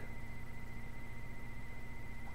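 Steady background hum and hiss, with a faint high steady whine above the low hum; nothing else sounds.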